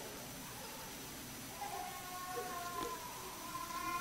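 A faint, high-pitched voice-like sound, drawn out for about two seconds in the second half, over quiet room tone.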